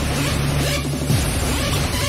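Loud makina, hard electronic dance music, played by the DJ over the club's speakers, with a steady kick-drum beat and heavy bass; a short falling bass sweep comes about a second in.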